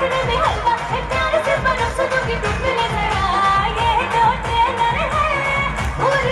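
A young female singer singing live into a handheld microphone over loud amplified music with a steady beat, heard through a stage PA.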